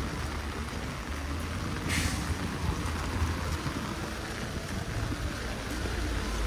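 Steady hiss of heavy rain falling on an umbrella and wet paving, with a low rumble underneath. A brief, sharper hiss cuts in about two seconds in.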